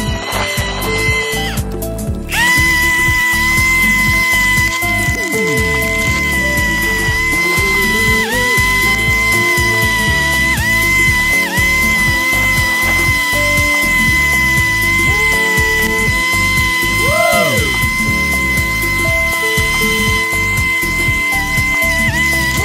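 Background music with a beat, over the steady high whine of an electric lawn mower's motor, which dips briefly several times as the blade takes load in the grass.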